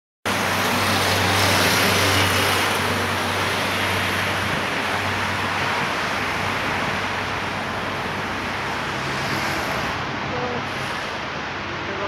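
Street traffic: steady noise of cars and engines on a city road, with a low engine hum that is strongest in the first few seconds and then fades.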